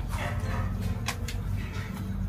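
A short whine falling in pitch just after the start, of the kind a dog makes, over a steady low hum. Light clicks come and go, fitting fingers on steel plates as people eat.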